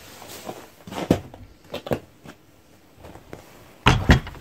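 A few light knocks and handling sounds, then a wooden outhouse door shut with a loud double knock near the end as its T-handle latch is worked.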